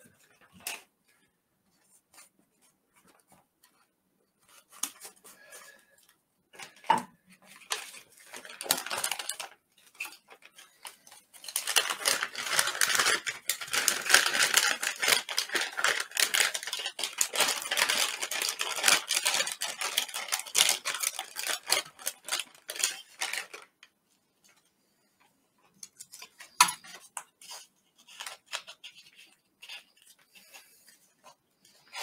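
MRE plastic and foil pouches being handled and crinkled, with a dense stretch of crackling rustle lasting about twelve seconds in the middle. Scattered short taps and clicks of packets being picked up and set down come before and after it.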